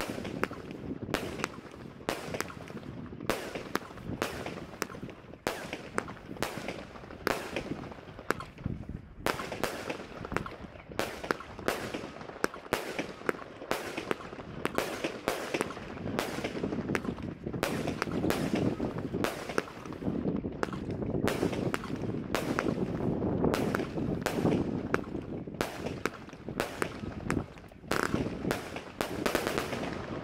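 Dragon Pro Series PS-C-25003 firework cake firing a rapid, unbroken run of shots and aerial bursts, about two or three a second.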